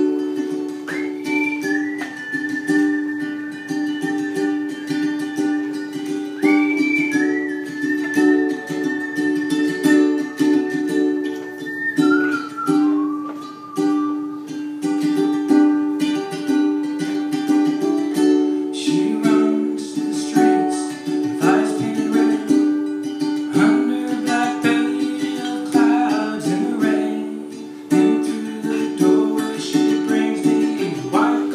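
Solo ukulele strummed steadily, with a long high held note sounding over it twice in the first half. A man's singing voice joins the ukulele in the second half.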